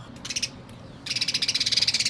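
A sparrow chattering: a short rattling burst, then, about a second in, a loud, fast rattle of high notes that keeps going. It sounds like a scolding call, which the owner reads as the bird being perhaps displeased.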